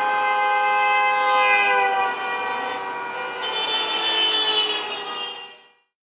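Car horn held in one long honk, its pitch dropping slightly as the car passes; a second, higher horn tone joins about three and a half seconds in, and the sound fades out just before the end. It is a driver honking in answer to a 'honk if you are against' roadside sign.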